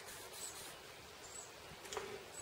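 Quiet background with a few brief, faint high chirps and a light click near the end, as a ringed piston is turned over in the fingers.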